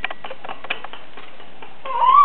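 Steady room hiss with a few faint clicks; just before the end a high-pitched, rising cry begins, from a newborn baby.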